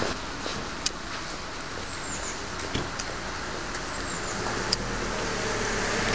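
Outdoor street noise of road traffic on a wet road, steady and noisy, with a few sharp clicks and a short high chirp that recurs about every second and a half. A low steady engine hum comes in about four and a half seconds in.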